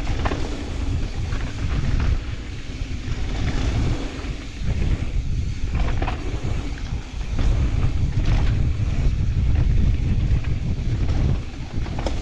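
Wind rushing over an action camera's microphone on a fast mountain-bike descent, with the tyres of a Commencal Clash rolling over dirt and gravel. Sharp clatters from the bike over bumps come now and then.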